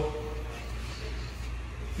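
Steady low hum with an even hiss: background room tone between words, with a voice's last sound fading out in the first half second.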